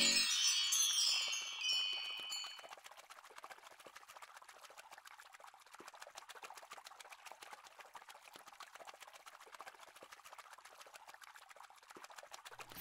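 A shimmering, chime-like sound effect fades out over the first two or three seconds. After it there is only a faint, steady fizzing crackle of tiny ticks.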